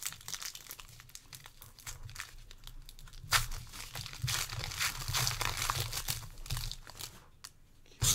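Foil trading-card pack wrapper being torn open and crinkled by hand, with one sharp rip a little over three seconds in and a few seconds of steady crinkling after it.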